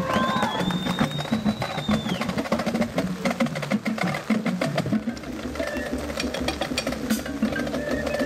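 Marching band percussion section playing: drumline snares, tenors and bass drums in rapid strokes, with pit keyboards, and one high held note over the first two seconds.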